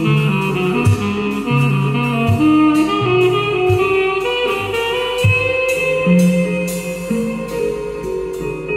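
Improvised music with a saxophone playing changing notes over low notes with sharp starts and scattered percussive clicks.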